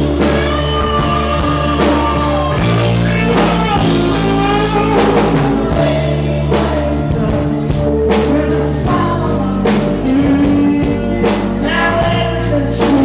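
Rock band playing live: electric guitars, bass and drums with a steady beat under a lead vocal.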